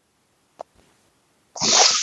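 Near silence, then about one and a half seconds in a sudden loud, breathy outburst from a person, sneeze-like, begins.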